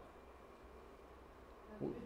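Near silence: quiet room tone with a faint, steady low hum, and a short vocal sound near the end.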